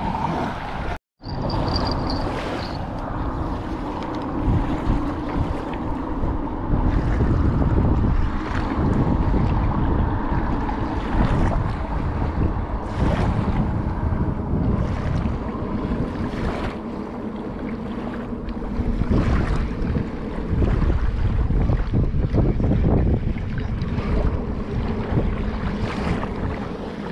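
Wind buffeting the microphone, a heavy gusting rumble, over small waves washing on a sandy shore. The sound drops out completely for a moment about a second in.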